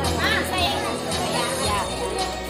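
Children's voices chattering and calling out, with a high call about a quarter of a second in, over music playing in the background.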